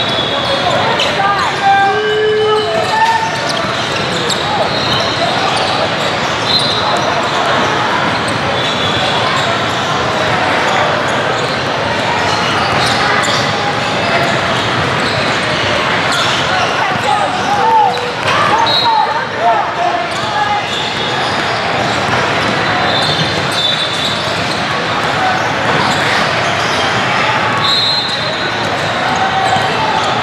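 Basketballs bouncing on a hardwood court in a large hall, over a steady din of many voices, with short high squeaks scattered through.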